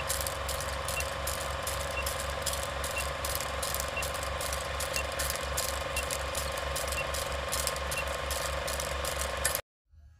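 Film projector sound effect under a countdown leader: a fast, even mechanical clatter over a steady hum, with a faint short blip once a second. It cuts off abruptly near the end.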